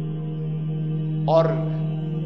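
Steady droning background music holding one low pitch, with a man's voice saying a single word about one and a half seconds in.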